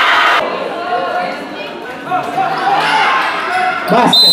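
A basketball bouncing on a concrete court amid spectators' chatter and shouting, with a burst of crowd noise that breaks off about half a second in.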